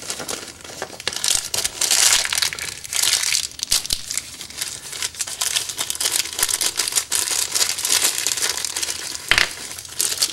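Plastic parts bag crinkling and rustling as hands rummage through small carburetor rebuild-kit parts, irregular and continuous, with one knock about nine seconds in.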